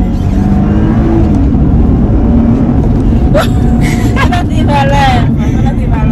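Steady low rumble of a car heard from inside the cabin, with a voice and laughter partway through.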